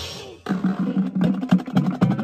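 Marching drumline of snare drums, tenor drums and crash cymbals playing. A cymbal crash rings and dies away at the start, there is a brief break about half a second in, then the drums come back in with fast, dense strokes.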